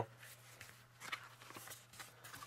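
Faint handling of a Little Golden Book as its cover is turned open: a few soft taps and rustles about a second in and again shortly after, over a low steady hum.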